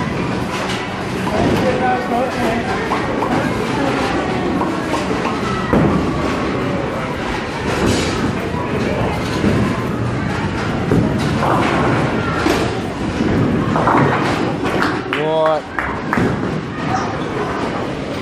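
Indistinct voices shouting and chattering in a busy bowling alley, with scattered thumps. A short wavering shout comes about fifteen seconds in.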